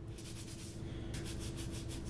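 A silver spoon being rubbed back and forth inside a cloth towel coated with toothpaste, baking soda and salt: a quick, even run of faint scrubbing strokes, several a second, as the gritty paste polishes tarnish off the silver.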